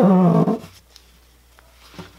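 A short, wavering vocal sound with a slight fall in pitch, in the first half second.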